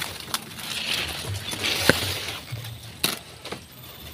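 Bamboo leaves and thin canes rustling as they are pushed through, with a few sharp clicks and snaps, the loudest about halfway.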